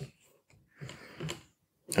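Faint handling of a small cardboard phone box: two brief, soft rustling knocks about a second in, otherwise quiet.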